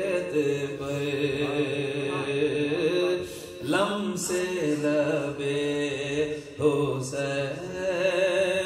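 A man chanting a devotional Urdu kalam into a microphone, drawing out long, wavering notes with two short pauses, about three seconds in and again past six seconds.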